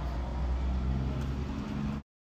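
Car engine running, heard from inside the cabin as a steady low hum.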